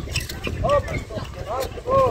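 Handball practice on an outdoor hard court: running footsteps and the slaps and thuds of the ball being caught and bounced, with short high calls from the players about a second in and near the end.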